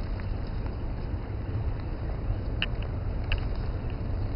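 Steady low outdoor rumble, with two short sharp snaps a little past the middle, less than a second apart.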